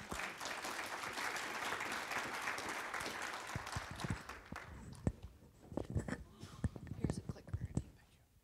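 Audience applauding, dying away about four seconds in, followed by a few scattered knocks.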